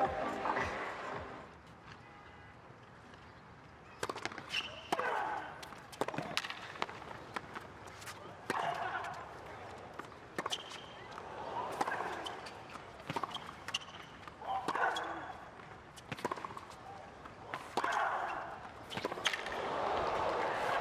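Background music fading out, then a short lull. From about four seconds in, sharp irregular knocks of a tennis ball bouncing and being struck by rackets in a hard-court rally, with bursts of crowd voices between.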